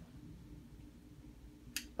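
Quiet room tone with a faint steady hum, broken near the end by one short, sharp click.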